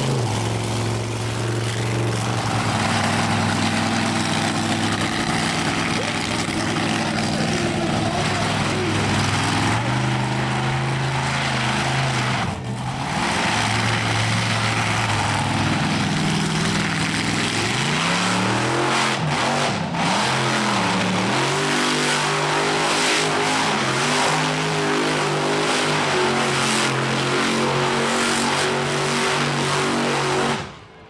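Monster truck engines running hard and revving while the trucks spin in dirt, with the pitch sweeping up and down repeatedly in the second half and a brief dip about twelve seconds in.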